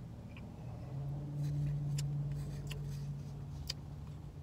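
A man's long, low hummed "mmm" of enjoyment while eating shaved ice, starting about a second in and held steady, with a few faint clicks.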